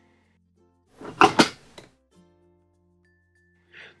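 Flap handle of a Thetford cassette toilet slid across under the seat to open the blade at the bottom of the pan: a short scrape with a couple of knocks about a second in.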